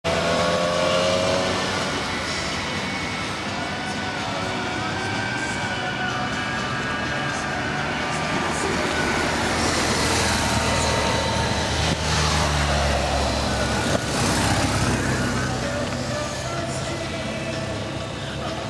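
Road traffic noise, with a motor vehicle passing close by around the middle and voices in the background.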